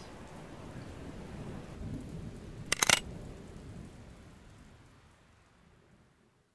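A steady low rumbling noise, with a few sharp clicks close together about three seconds in, fading away to silence near the end.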